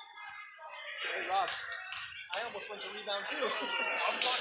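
Indistinct voices of players and spectators talking in a gymnasium, with a few sharp knocks among them.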